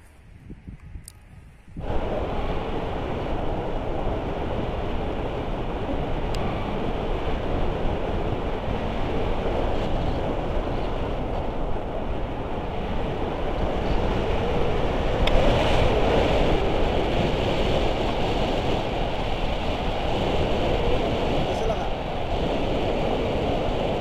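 Wind rushing over an action camera's microphone on a tandem paraglider in flight: a loud, steady rush that starts abruptly about two seconds in, after a short stretch of faint sound.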